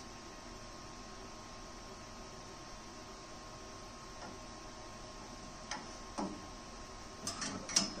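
Quiet shop background with a faint steady hum, broken in the second half by a few light clicks and taps of a metal angle gauge being set against a steel tube, with a small cluster of them near the end.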